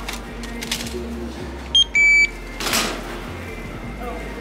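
Self-checkout barcode scanner beeping as an item is scanned: a short high beep, then a slightly longer, lower beep right after it. There are light handling knocks around the beeps.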